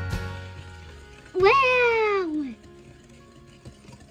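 Background music fades out, then one drawn-out vocal call, about a second long, rises and then slides down in pitch; it is the loudest sound here.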